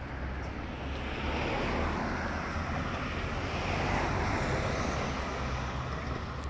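A car passing on the road alongside, its tyre and engine noise swelling about a second in and fading away near the end, over a steady low rumble.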